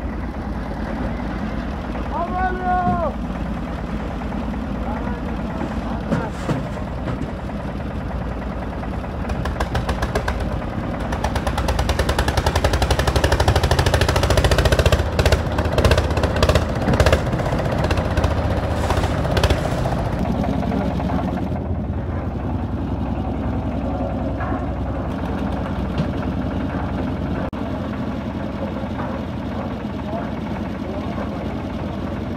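Concrete mixer's engine running with a fast, steady knocking, loudest for several seconds in the middle. A short shout about two seconds in.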